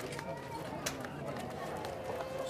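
Outdoor location sound with faint, indistinct voices and a few sharp clicks. A steady held tone comes in near the end.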